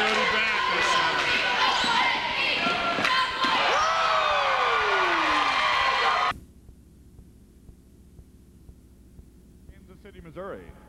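Basketball game sound in a gym: a ball bouncing on the hardwood floor under crowd voices and shouting, loud and busy. About six seconds in it cuts off suddenly to a low tape hiss.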